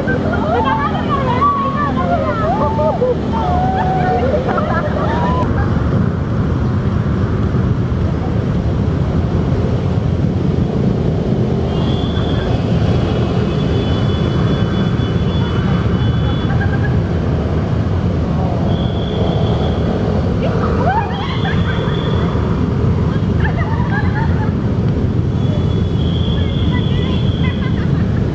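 Steady, loud rumble of traffic and outdoor noise, with high-pitched voices calling out in the first few seconds and again about 21 seconds in. A thin, high whistle-like tone comes and goes several times in the second half.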